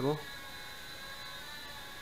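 Blade Nano QX micro quadcopter hovering and moving in flight, its four small electric motors and propellers giving a steady high-pitched whine made of several thin fixed tones.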